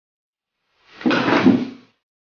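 Water thrown from a drinking glass splashing: one short noisy burst about a second long.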